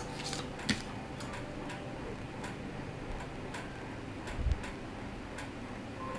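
Tarot cards handled on a tabletop: faint, irregular light clicks and taps, with one soft low thump about four and a half seconds in, over a quiet steady room hum.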